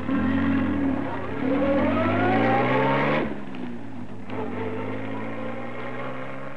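Car engine pulling away: its pitch climbs steadily for about three seconds, then drops back and runs on more quietly and evenly.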